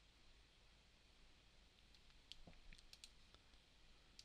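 Near silence, with a few faint computer mouse clicks from about halfway through.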